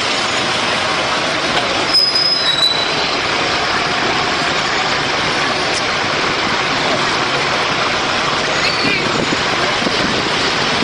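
A convoy of military trucks driving past, a dense steady noise of engines and tyres, with a brief high squeal about two seconds in.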